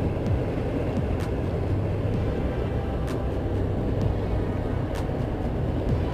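A car driving slowly through a flooded street: steady engine and road hum with floodwater swishing against the side of the body.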